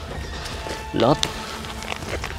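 Dry leaf litter and twigs crackling and rustling in short clicks as a person crawls through a dense, dry thicket, under background music. A single short word is spoken about a second in.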